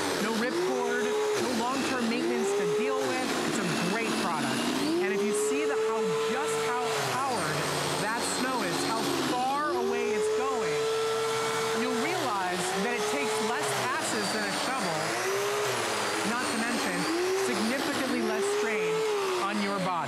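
Earthwise 12-amp corded electric snow shovel running as it clears heavy snow. The motor's pitch sags and climbs back again and again as it pushes into the snow and throws it.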